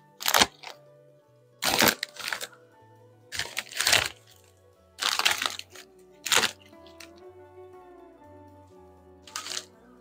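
Plastic crisp packet crinkling and rustling in several short bursts as it is handled, over background music with a slow stepped bass line.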